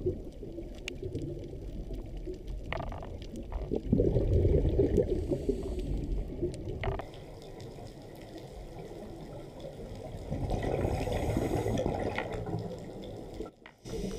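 Underwater sound of a scuba diver's breathing through the regulator: two long rushes of exhaled bubbles, one about four seconds in and another past the middle, over a low water rumble with a few faint clicks.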